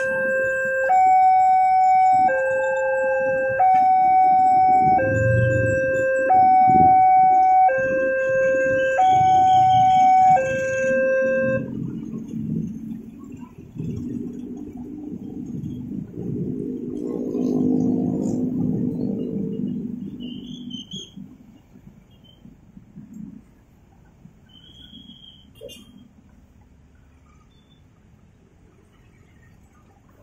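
Railroad level-crossing warning alarm sounding a loud two-tone electronic chime that switches between two pitches about every one and a half seconds, then cuts off about twelve seconds in as the crossing clears after the train. After that comes road traffic engine noise, with one vehicle passing louder from about seventeen to twenty seconds in.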